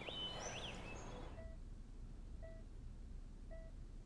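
Birds chirping faintly for about the first second, then a bedside patient monitor beeping softly about once a second.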